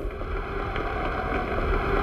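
Steady rushing noise of an old open-air newsreel sound recording, an even wash with no distinct events.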